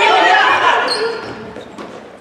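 Spectators' voices calling out over basketball play in a gym, fading after about a second, with short sneaker squeaks on the hardwood floor and a ball bouncing.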